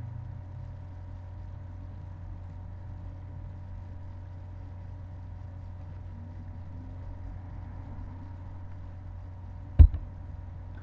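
Steady low background hum with a few faint steady tones above it, and one short sharp click just before the end.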